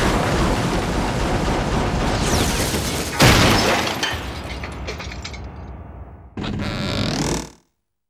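Cartoon sound effects of a television set tumbling down a staircase: a long, loud noisy fall with a sharp crash about three seconds in, fading away. Then comes a short sound effect that rises in pitch and cuts off suddenly near the end.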